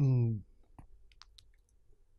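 A man's brief voiced sound, about half a second long and falling in pitch, as a speaker closes his turn, then a few faint clicks.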